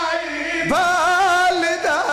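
A man chanting verse in a sung, melodic recitation, one voice holding long wavering notes; a new phrase begins about two-thirds of a second in, rising and then held.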